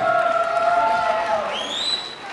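Live concert crowd cheering and whooping after the song ends, with a held tone through most of it and a rising whistle near the end.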